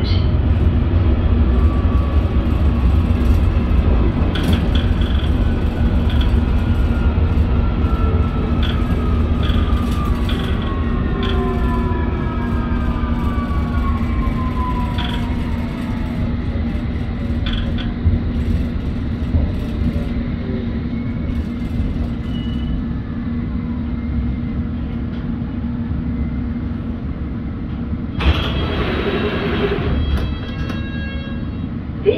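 London Underground S8 Stock train heard from inside the carriage: a steady low rumble of wheels on track, with the traction motor whine falling in pitch through the middle as the train slows.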